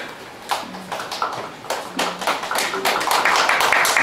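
Audience applause: a few scattered claps at first, building quickly into steady, louder clapping from the whole room.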